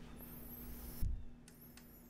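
Quiet room tone with a steady faint hum, a soft low thump about a second in, and then an even quieter stretch.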